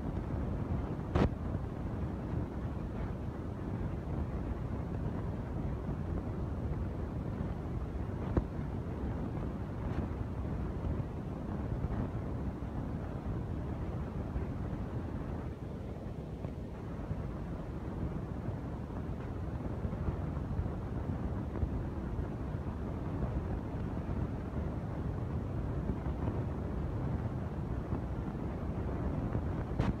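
Steady low wind rumble on the microphone, with scattered sharp clicks of bricklayers' steel trowels tapping bricks into place. The loudest click comes about a second in.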